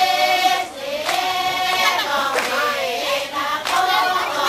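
A group of Pulapese women singing a traditional dance chant together, the voices sliding up and down in pitch. A few sharp hand claps fall through it.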